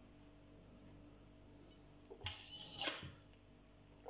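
Quiet room tone with a faint steady hum. A little past two seconds in comes about a second of rustling handling noise, ending in a sharp click.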